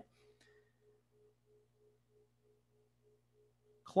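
Near silence: a very faint steady low hum with a faint tone pulsing about four times a second, until a man's voice comes back right at the end.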